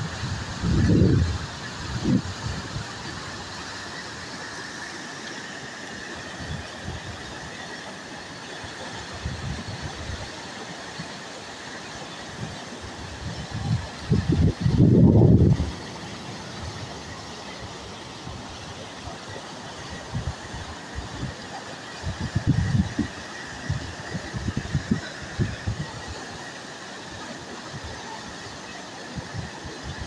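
Flash-flood water rushing steadily in a continuous roar. Gusts of wind buffet the microphone in low bursts, the loudest in the middle and a cluster near the end.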